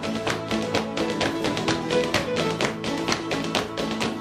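Acoustic guitars playing a lively dance tune while a step dancer's hard-soled shoes tap out quick, steady jigging steps on a wooden floor.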